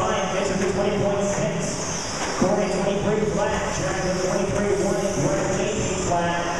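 Several 2WD electric short-course RC trucks racing, their motors whining in a few overlapping tones that rise and fall with throttle, with a knock a little over two seconds in. Voices run underneath.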